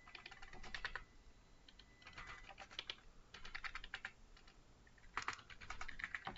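Faint computer keyboard typing in short bursts of quick keystrokes, with brief pauses between bursts.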